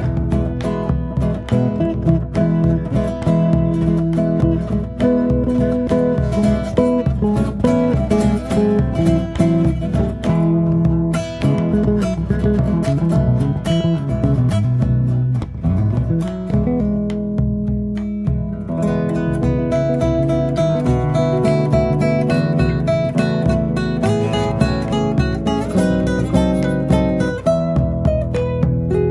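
Instrumental acoustic guitar music: a melody of plucked notes picked over low sustained notes, played steadily.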